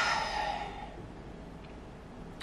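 A woman's sigh: a breathy exhale right at the start that fades away over about a second, followed by quiet room tone.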